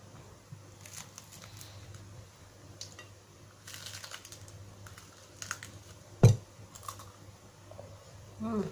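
Eating sounds close to the microphone: scattered small clicks and smacks of fingers picking at rice and fried food and of chewing. One sharp thump about six seconds in is the loudest sound.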